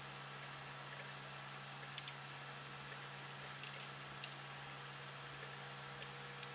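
Faint steady hum and hiss of an oscilloscope's cooling fan running as the scope boots. A few faint clicks come about two, three and a half and four seconds in.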